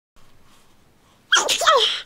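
A woman with a head cold sneezing once, a sudden loud burst about two-thirds of the way in, into a tissue.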